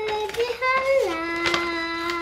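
A young girl singing, holding a note and then sliding down to a lower long-held note about halfway through.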